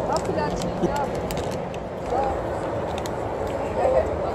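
Faint, scattered voices of people talking over a steady background rush of outdoor noise.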